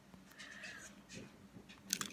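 Faint handling sounds of fingers squeezing a small foam squishy toy close to the microphone, with a sharp click just before the end.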